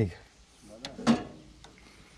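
A wrench working a bolt on a forage harvester's chain drive: small metallic clicks and scrapes, with one sharp knock about a second in.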